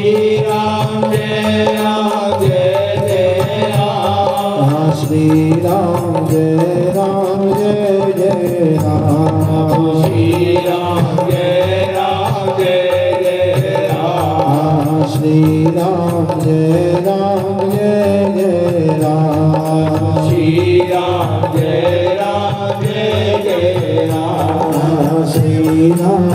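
A group of men singing a devotional hymn (bhajan) through microphones, in a continuous melodic line over a steady rhythmic accompaniment.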